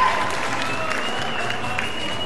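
Audience applauding, with music and a few held tones underneath.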